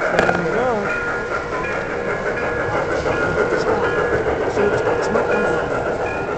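MTH model steam locomotive pulling freight cars along the layout's track, its wheels clicking over the rail joints.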